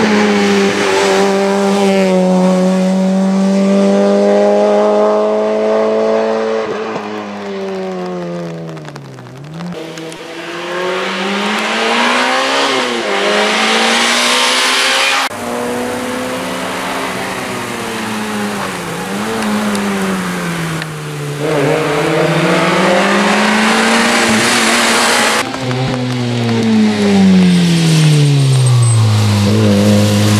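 Peugeot 106 rally car's 1600 cc four-cylinder engine running hard, its pitch climbing and dropping over and over as the car accelerates, changes gear and slows. The sound jumps abruptly a few times.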